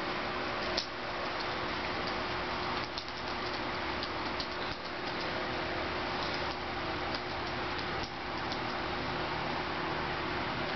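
Steady room noise: an even hiss with a faint steady hum and a few light clicks scattered through it.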